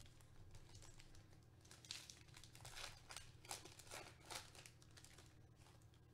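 Faint crinkling and tearing of a foil trading-card pack wrapper being ripped open by hand. It comes as a series of short rustles, mostly between about two and four and a half seconds in.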